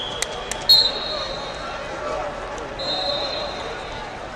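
Wrestlers grappling on a foam wrestling mat: a few sharp knocks, then a loud slap under a second in. Two high, steady squeals, a short one with the slap and a longer one near the end, sound over background voices echoing in a large hall.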